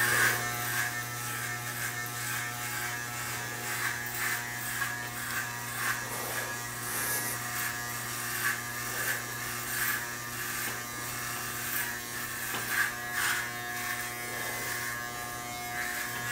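Corded electric hair clippers buzzing steadily while shaving a head down close to the scalp. Small swells come and go as the blades are drawn through the hair.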